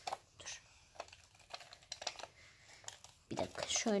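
Light, irregular clicks of hard plastic parts on a toy power drill being handled and pressed together by hand, a few clicks a second. A woman's voice comes in near the end.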